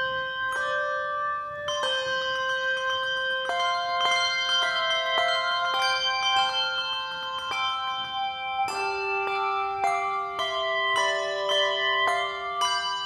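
A handbell choir playing: several bells struck together in chords and left to ring over one another, with a fresh stroke every second or so.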